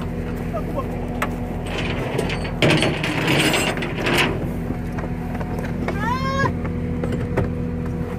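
Goats being hauled out of a crowded car: a burst of scuffling and rustling about a third of the way in, and a single goat bleat near the end. A steady low mechanical hum runs underneath.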